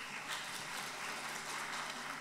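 Faint, steady hush of a seated audience in a large hall, with small rustles.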